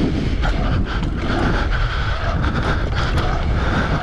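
Wind rushing over the microphone of a bike-mounted camera as a mountain bike rolls fast along a concrete pump track, with steady tyre noise and scattered light knocks from the bike over the track.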